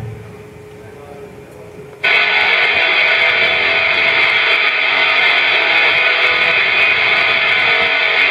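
Electric guitar played through an amplifier kicks in suddenly about two seconds in, after a short lull, and keeps ringing out steadily in strummed chords: the start of the song's intro.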